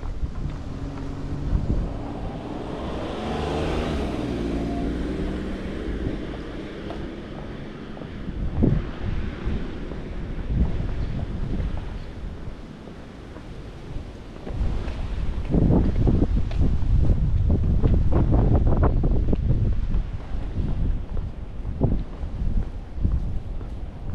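Street sound: a vehicle engine passes in the first few seconds, swelling and fading. Then wind rumbles on the microphone in gusts, heaviest from about fifteen seconds in.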